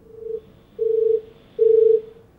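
Three steady, mid-pitched electronic beeps at one even pitch, evenly spaced, the first one quieter.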